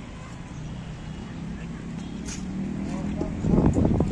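Outdoor street-side ambience: a steady wash of passing traffic with people's voices in the background, growing louder near the end.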